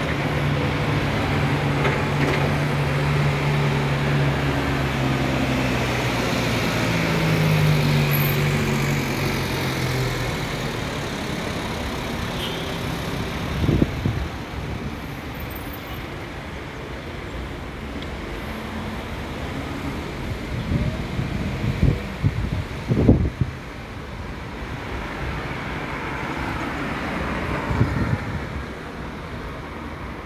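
Road traffic on a city street: a vehicle engine hums for about the first ten seconds, then cars go by, with a few short thumps.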